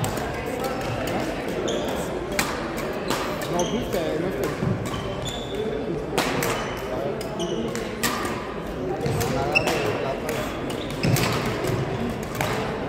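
Badminton rackets striking a shuttlecock in sharp, irregular hits, with court shoes squeaking on a hardwood gym floor, all echoing in a large hall.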